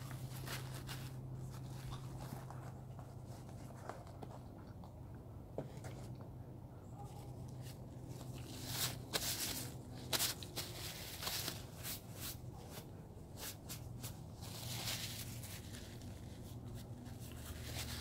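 Quiet chewing of a bite of pork sandwich, with a paper napkin rustling and crinkling as hands and mouth are wiped: a scatter of small clicks and crinkles, busiest about halfway through, over a faint low hum.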